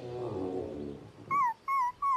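A cartoon puppy whimpering: two short whines that fall in pitch near the end. They come after a falling musical slide that dies away about a second in.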